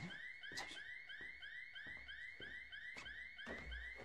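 Electronic security alarm going off: a short rising chirp repeated evenly, about three times a second.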